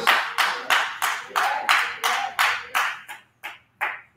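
Hand clapping in a steady rhythm, about three claps a second, dying away over the last second.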